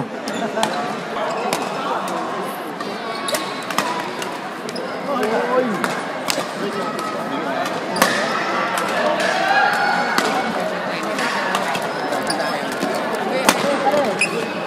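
Badminton rally in a large sports hall: sharp racket strikes on the shuttlecock every few seconds, with a strong hit about eight seconds in and another near the end. Faint voices of onlookers run underneath.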